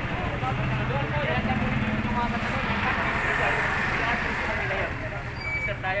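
A motorcycle-and-sidecar tricycle's engine running as it passes close by, a steady low hum that is strongest in the first three seconds, with people chatting under it.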